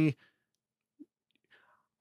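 A man's voice breaks off, then a pause of near silence with a tiny click about a second in and a faint breathy sound shortly before talking resumes.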